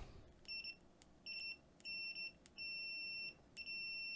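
Mustool MT11 multimeter's continuity buzzer beeping as its probe tips touch, signalling a closed circuit. There are five high-pitched beeps of uneven length, the longest lasting most of a second, each begun by a faint click of metal tip on tip.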